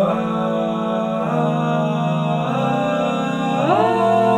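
One singer's voice multitracked into four-part a cappella harmony, holding sustained 'ah' chords in microtonal intervals, written in 96-tone equal temperament. The chord moves to new pitches about every second and a quarter, and the parts slide upward together near the end.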